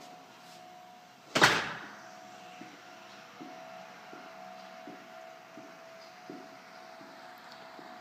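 An interior door shutting with a single sharp bang about a second and a half in, followed by a faint steady hum.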